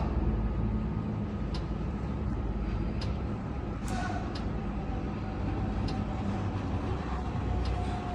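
A steady low mechanical hum, like machinery or an idling engine, with a few faint clicks over it and a thin steady tone coming in about halfway through.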